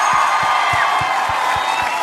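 A large concert crowd cheering, with a low drum beat of about three thuds a second underneath.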